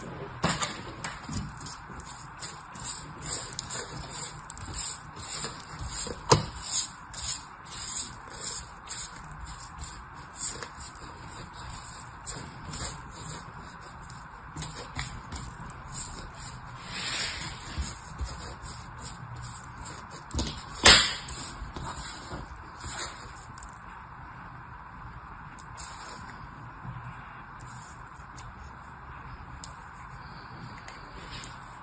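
Kinetic sand crunching and rustling under fingertips as it is pressed and packed into a small plastic mold: a quick run of soft, crisp crackles that thins out in the last few seconds. A single sharp click stands out about 21 seconds in.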